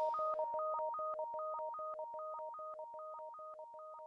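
A run of electronic beeps, two pure tones at a time, switching pitch about six times a second like telephone keypad tones, as the song's music falls away and the beeps fade out.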